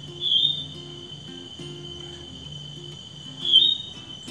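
A caged female jongkangan calling twice: two short high chirps about three seconds apart. Under them runs a steady high insect-like trill.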